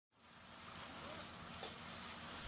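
Faint steady hiss from a house fire being fought with a water hose, fading in just after the start.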